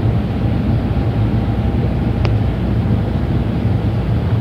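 A steady low hum with no change in level, and one faint tick about halfway through.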